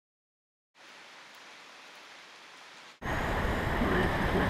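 Silence, then a faint steady hiss. About three seconds in it cuts suddenly to a loud, steady rushing noise of outdoor ambience up in a forest canopy.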